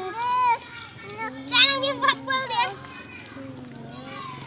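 Young children's voices: high-pitched talking and calls, a short burst about half a second in and a longer run of quick, rising and falling calls from about one and a half seconds to near three seconds.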